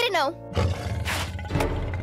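A deep, rough growl in the cartoon soundtrack over background music, after a short spoken word.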